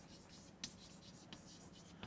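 Faint chalk scratching and tapping on a blackboard as words are written, in short, scattered ticks.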